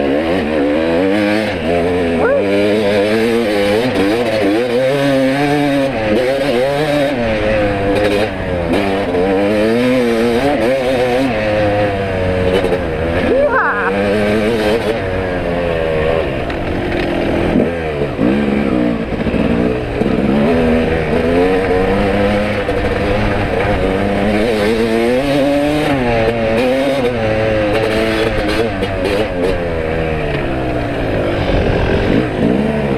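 Dirt bike engine being ridden along a trail, heard up close. The revs rise and fall every second or two with the throttle and gear changes.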